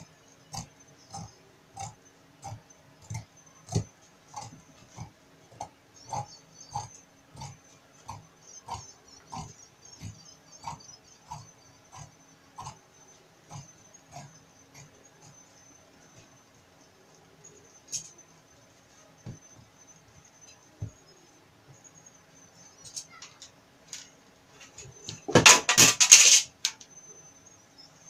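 Large dressmaker's shears cutting through trouser fabric on a table: a steady snip roughly every two-thirds of a second for the first half, then a few scattered snips. Near the end there is a loud burst of noise lasting about a second.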